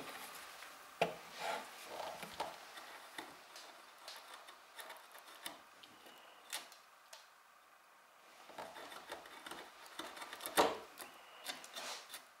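Hand wood chisel paring and chopping into the corner of a mortise: scattered scraping cuts and small taps of steel on wood, with a couple of sharper knocks about a second in and near the end.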